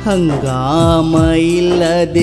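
Kannada folk song: a singer holds one long note that slides down at the start and then stays steady, over repeated drum beats.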